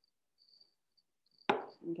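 Near silence, then a single sharp knock about a second and a half in, followed by a brief spoken "okay".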